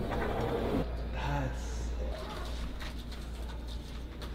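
Faint, indistinct voices over a steady low room hum.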